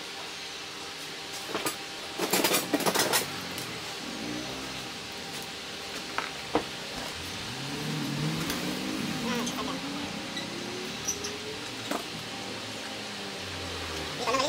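Light clinks and clicks of small hand-held parts knocking against a steel tube frame, a quick cluster of them about two to three seconds in and a few single clicks later. Partway through, an engine in the background rises slowly in pitch.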